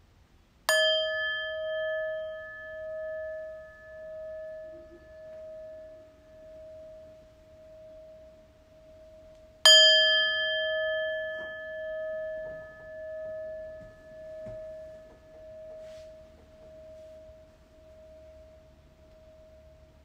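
Hand-held brass singing bowl struck twice with a wooden mallet, about nine seconds apart. Each strike rings out in a long tone that pulses slowly as it fades.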